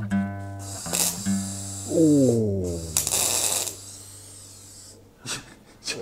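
Acoustic guitar being played while a voice sings. About two seconds in, the voice slides steeply down in pitch over a held low note. It fades toward the end.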